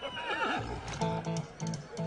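A horse whinnies in the first half-second, a wavering cry that falls in pitch. It is followed by film-score music of short repeated notes, about three a second.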